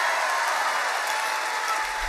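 Large concert audience applauding steadily at the end of a song.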